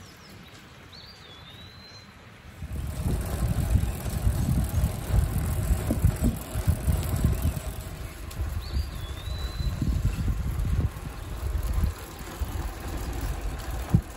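Riding noise from a gravel bike on a concrete path, heard from a camera mounted on the bike: wind buffeting the microphone and tyre rumble start suddenly about two and a half seconds in after a quiet stretch. A bird's short whistled call, rising then falling, sounds about a second in and again after about eight and a half seconds.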